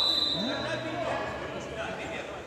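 A single steady whistle blast, about a second long, in a sports hall, over voices and a ball bouncing on the wooden floor.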